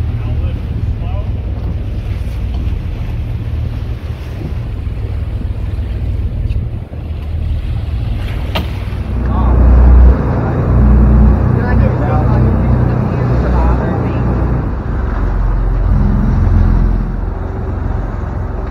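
Wind buffeting the microphone over the steady running of a sportfishing boat's engine at sea, with waves washing against the hull; it gets louder from about nine seconds in.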